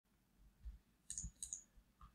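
Faint computer mouse clicks: two short clusters of sharp clicks, about a second and a second and a half in.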